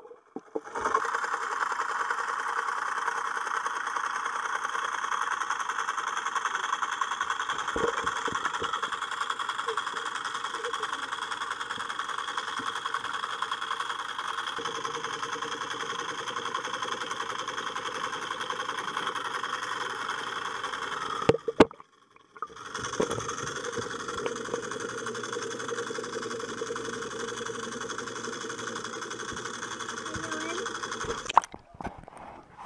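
Steady muffled underwater noise picked up by a waterproof action camera lying in a swimming pool, broken by a knock and about a second of silence roughly two-thirds of the way through.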